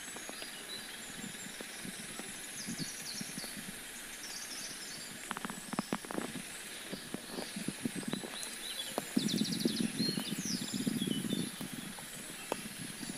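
Steady monsoon rain hissing down, with large drops landing close by as sharp ticks, several bunched together about halfway through. Short trains of high, rapid chirping calls come and go, and a louder low sound swells for a couple of seconds near the end.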